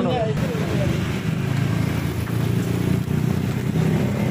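Hot oil sizzling steadily in a deep fryer as banana spring rolls fry in a wire basket, over a constant low rumble.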